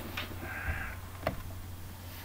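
Handling noise as a small whiteboard is picked up and raised: a couple of light clicks and a brief squeak, over a low steady hum.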